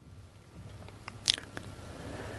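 Low room noise picked up by a lectern microphone, with scattered faint clicks and one sharper click a little over a second in.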